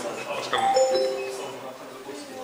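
Two-note descending electronic chime, a ding-dong, from the council chamber's speaking-time system, sounding as a speaker's five-minute limit runs out. It starts about half a second in, and the lower second note fades away by the end.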